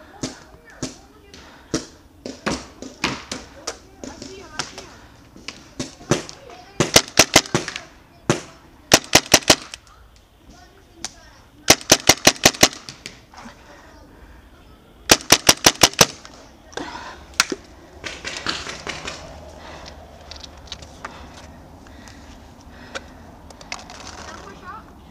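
Paintball marker firing in four quick strings of about five to seven shots each, a few seconds apart, with scattered single shots between them.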